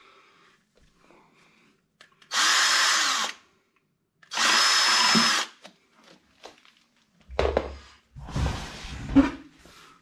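Cordless drill run in two bursts of about a second each, a steady high motor whine with a short pause between. These are followed by a couple of seconds of low rumbling and a few knocks.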